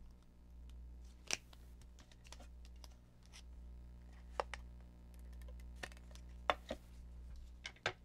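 Paper-crafting handling sounds: a handful of scattered sharp clicks and light rustles as paper strips are handled and a tape runner lays adhesive, over a low steady hum.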